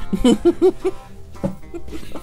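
A man laughs briefly, a few quick bursts in the first second, over background music with plucked guitar notes, which carries on alone after the laugh.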